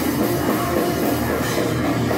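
A rock band playing live: drum kit, electric guitars and bass through amplifiers, loud and continuous.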